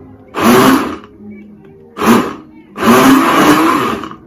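Countertop blender run in short pulses while blending juice: three bursts of motor whir, the last and longest over a second, each rising and falling as the button is pressed and let go.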